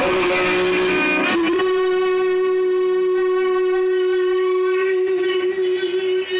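Live acoustic band music with acoustic guitars, settling after a chord change into one long held note that fades near the end, like the close of a song.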